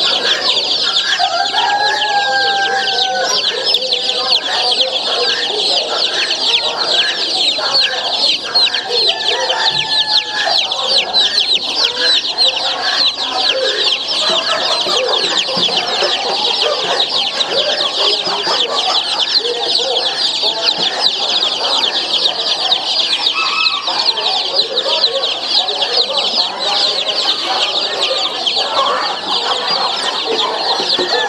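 A crowd of baby chicks in wire cages peeping all at once: a dense, unbroken chorus of short, high-pitched falling peeps, with fainter lower calls scattered underneath.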